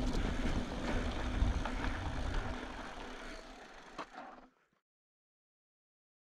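Polygon Siskiu T7 mountain bike rolling on a dirt track, tyre noise and wind on the camera microphone, fading as the bike slows. A short click about four seconds in, then the sound cuts off.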